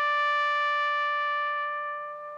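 A solo brass instrument holds one long, steady note that begins to fade near the end.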